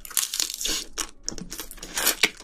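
Close-miked chewing of a big mouthful of spicy braised seafood and bean sprouts: a rapid run of crunching, crackling bites that starts abruptly as the food goes in.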